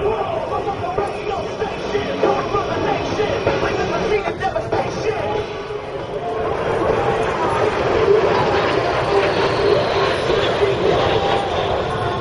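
Crowd voices, then the engine noise of a formation of jet aircraft flying by, swelling from about six seconds in and staying loud to the end.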